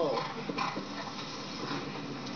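A show-jumping broadcast playing from a television: a steady arena and crowd background with a few faint knocks, after the commentator's voice trails off at the very start.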